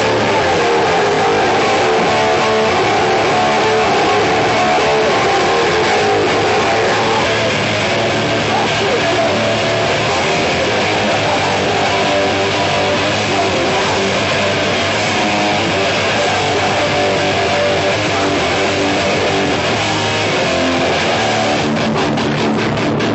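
Hardcore punk band playing live at full volume: distorted electric guitar, bass guitar and drums, continuous with no break.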